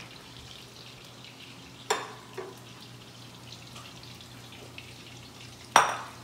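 Shrimp meatballs frying in oil in a stainless steel pan: a steady sizzle. There is a sharp clank about two seconds in and a louder one near the end.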